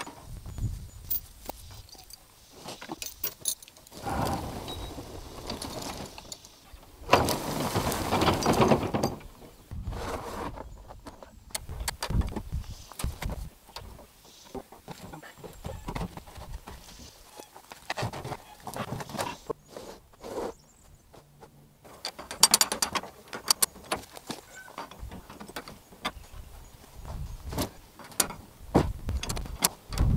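Intermittent metal clicks, clanks and rattles of a farm jack being worked by its long lever, its pins snapping in and out of the holes in the jack's bar, with longer stretches of rattling and scraping about four, eight and twenty-two seconds in.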